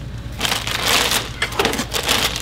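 Plastic packaging crinkling and crackling as it is handled, starting about half a second in.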